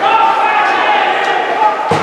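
Voices calling out in an echoing indoor ice rink during a hockey game, with one sharp knock near the end.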